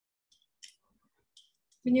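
A few faint, irregular light clicks from a double-ball metal facial roller being worked over the cheek; a woman starts speaking just before the end.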